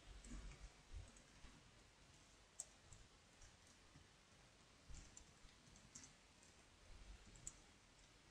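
Near silence with a few faint, scattered computer-keyboard key clicks as code is typed.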